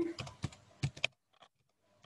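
Typing on a computer keyboard: a quick run of about eight or nine keystrokes, stopping a little over a second in.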